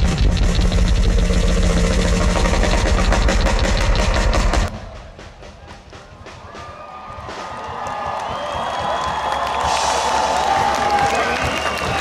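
Live rock drum kit solo, fast and loud, that stops abruptly about four and a half seconds in; the crowd then cheers, swelling louder toward the end.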